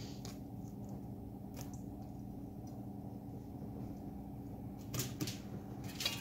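A few faint taps and knocks of food and utensils being handled at a kitchen counter, two close together near the end, over a steady low hum.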